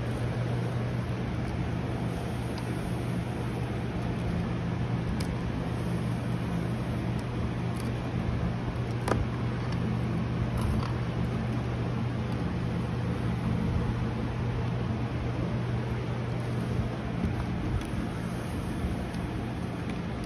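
Steady low droning hum over a constant rush, unchanging throughout, with a few faint clicks from handling the feed pails.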